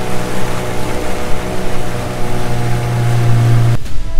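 Motorboat engine running steadily under way, with wind and water rushing past; its low hum swells toward the end, then the sound cuts off abruptly.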